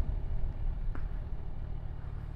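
Kawasaki Ninja 1000SX inline-four motorcycle engine running with a low, steady rumble while the bike slows down, heard from the rider's mounted camera with wind noise. A faint click about a second in.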